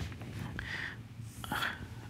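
Marker pen drawing on a whiteboard: faint scratchy strokes about half a second in and again near one and a half seconds.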